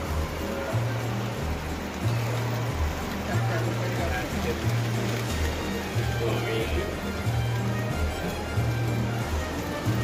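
Background music with a steady, repeating bass line, heard over the chatter of a crowd in a large echoing hall.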